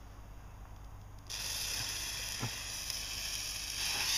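Gunpowder fuse of a homemade rocket catching about a second in and burning with a steady spitting hiss, with one small pop past the middle.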